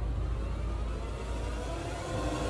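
Suspense background score between cues: a steady, noisy low rumble without a clear melody.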